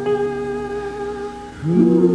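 A woman singing a long held note over acoustic guitar in a live ballad performance. The note fades about one and a half seconds in, and a new sustained note comes in near the end with a slight upward scoop.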